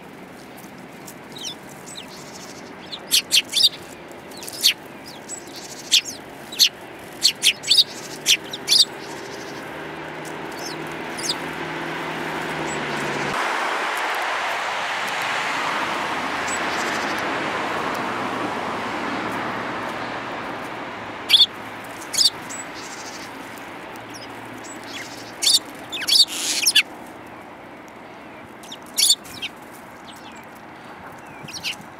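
Eurasian tree sparrows giving short, sharp chirps in quick clusters while feeding from a hand. In the middle a broad rushing noise swells and fades over about ten seconds.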